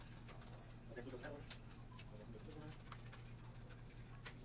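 Faint room tone with a steady low hum, scattered light ticks and brief faint snatches of voice.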